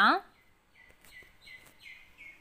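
Faint bird chirping in the background: a run of short, high chirps repeated about three times a second.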